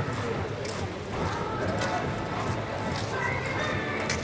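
Horse's hoofbeats on arena sand as it lopes, with voices in the background.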